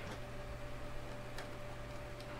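Quiet room tone: a steady faint hum with a thin steady whine, and a single faint tick about one and a half seconds in.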